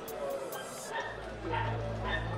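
A Belgian Malinois guarding a basket gives a few short barks at the decoy, about a second in and again near the end.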